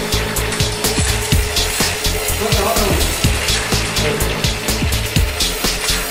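Linotype line-casting machine running while its keyboard is typed on: rapid, irregular clicking and clatter over a steady mechanical hum, with music also audible.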